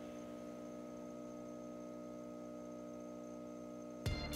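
A steady hum made of several held tones, unchanging throughout.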